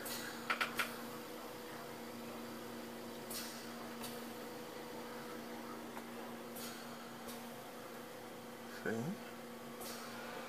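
Dell Inspiron 531 desktop tower just powered on, its cooling fans running with a steady low hum. A few light clicks of handling come through, and something briefly rises in pitch near the end.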